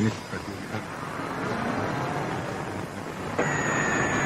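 Military radio static hissing on an open channel between transmissions, with faint whistles gliding in pitch. About three and a half seconds in, the hiss jumps louder and a high whistle comes in, slowly falling in pitch.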